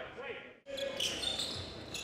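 Basketball game sounds in a gym: a ball dribbled on a hardwood court amid players' movement and a murmuring crowd, with a brief dropout about half a second in.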